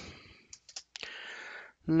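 Blu-ray steelbook cases being handled: a few light clicks about half a second in, then a brief rustling slide as a case is set aside and the next is picked up.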